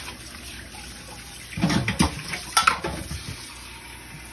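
Kitchen faucet running steadily into a stainless steel sink while a bowl is rinsed under the stream, louder for about a second in the middle, with a sharp knock of dishes about two and a half seconds in.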